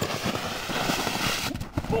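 Plastic boogie board sliding over crusty snow: a steady scraping hiss that cuts off suddenly about one and a half seconds in as the rider comes off, followed by a few soft thuds of him landing in the snow.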